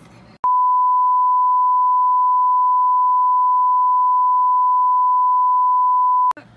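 A loud, single steady beep tone, the test tone that goes with TV colour bars, edited in as a 'technical difficulties' gag. It cuts in suddenly about half a second in and holds at one unchanging pitch.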